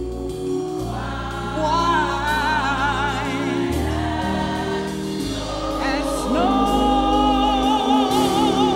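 Gospel choir singing with a woman leading on a microphone, over held low chords that change every second or two. A solo voice with wide vibrato comes in about two seconds in and again near the end.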